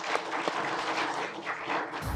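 Applause from a small audience: many hand claps overlapping in a steady round.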